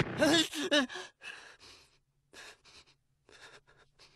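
A man's voice-acted laugh trailing off in the first second, then ragged, labored breathing: six or seven short gasping breaths, over a faint low hum.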